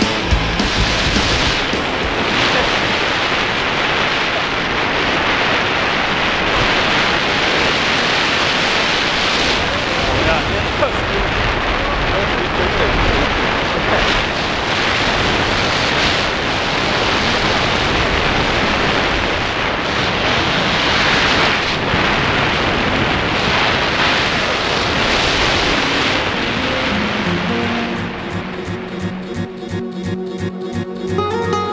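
Wind rushing over the camera's microphone during a parachute descent under an open canopy: a steady, loud, noisy rush. Music comes back in near the end.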